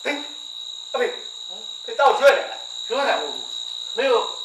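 Men's Burmese dialogue in short phrases with pauses between them, over a steady high-pitched whine that runs unbroken underneath.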